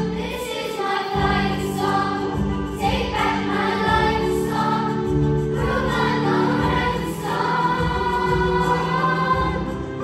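Junior high school choir singing a song, girls' voices at the front leading, over low held accompaniment notes.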